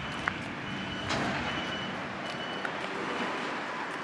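Steady traffic noise with a high electronic beep repeating about every half second, as from a vehicle's reversing alarm, and a few light knocks.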